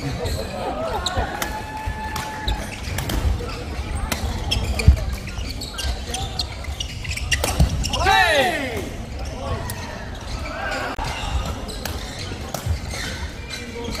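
Badminton doubles rallies on an indoor court: rackets strike the shuttlecock in a run of sharp pops, the loudest about five seconds in. Players' shoes squeak on the court floor, most plainly about eight seconds in, over the hall's background voices.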